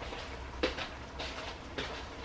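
A few light knocks and clicks of kitchen utensils and cookware being handled, over a steady low hum.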